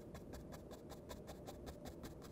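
Paintbrush bristles tapping on a stretched canvas, a fast, even run of faint ticks several times a second as dark purple acrylic is pounced in along the edge to soften a hard line.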